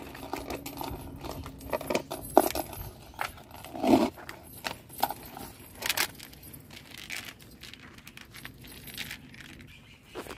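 Thin metal hanging-basket chains jingling and clinking as they are handled, in a run of irregular clinks with a few louder knocks about two and a half, four and six seconds in.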